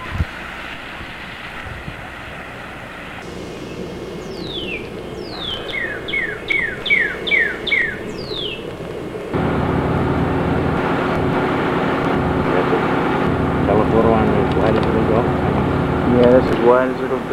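A songbird whistling a run of about eight clear downward-sliding notes, about two a second, over a steady outdoor hiss. Partway through, a louder steady low hum takes over.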